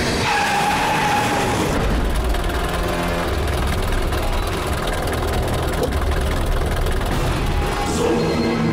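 SUV engine running as the vehicle drives in over dirt and pulls up, with a short high squeal near the start.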